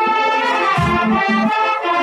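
A wind band playing, brass to the fore: held chords sounding over a bass line that moves in short, repeated notes.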